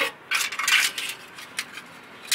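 Steel exhaust pipe being twisted and worked onto its fitting by hand, metal scraping and clinking on metal: a short clink, then scraping for about half a second, then a couple of lighter scrapes.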